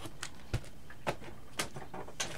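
A few light knocks and clicks from vinyl record sleeves being handled, as one LP is put down and the next record picked up.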